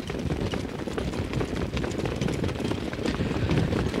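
Track sound of a field of harness horses and their sulkies coming to the start: a steady low rumble with faint hoofbeat clicks.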